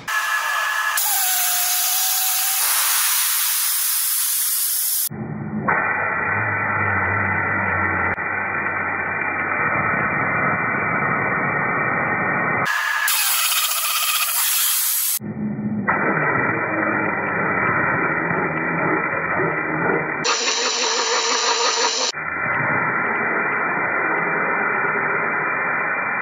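A 60,000 psi abrasive waterjet cutting head piercing a ballistics-gel hand: a loud, steady hiss of the high-pressure jet, with garnet abrasive fed into the stream. The hiss changes abruptly in tone several times.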